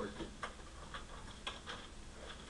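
A few faint, sharp clicks about half a second apart over low room noise.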